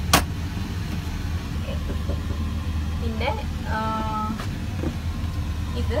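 One sharp click as the aircraft lavatory door lock latch is slid, over the steady low hum of the airliner cabin.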